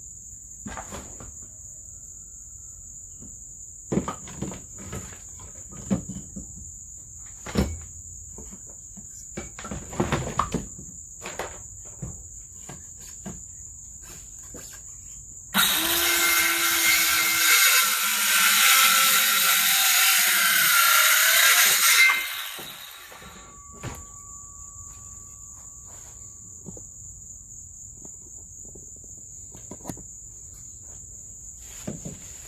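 A cordless drill/driver runs for about six seconds, starting and stopping abruptly as it drives a screw through a wooden 2x4 brace into the trailer's floor framing. Before it come several wooden knocks from the board being handled and set in place, and crickets chirp steadily throughout.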